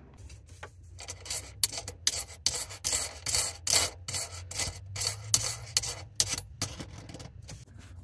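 Handling noise of a faucet being unpacked and installed: an irregular run of short rubbing and scraping strokes with a few clicks as cardboard, hoses and fittings are handled, over a faint steady low hum.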